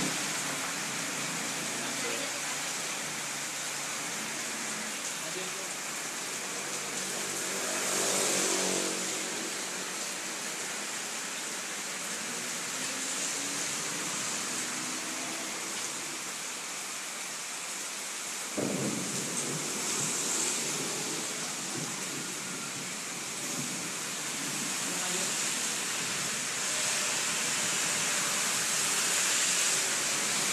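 A steady hiss of background noise with faint, indistinct voices talking in the room.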